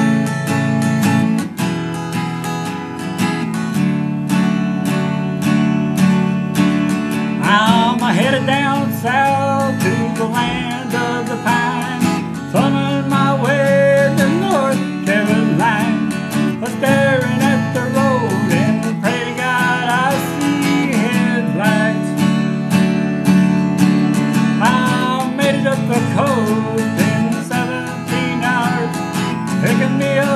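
Acoustic guitar strummed steadily, with a man's voice starting to sing over it a few seconds in.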